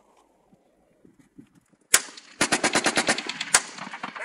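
Small-arms gunfire. A single shot comes about two seconds in, then a rapid burst of automatic fire lasting about a second, ending with one more sharp shot.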